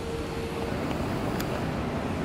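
Steady outdoor city background noise: an even wash of distant traffic and air movement, with a faint steady tone fading out in the first moments.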